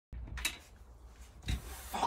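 Handling noise from work on a van's swivel seat base: two knocks, about half a second and a second and a half in, with rubbing and scraping between.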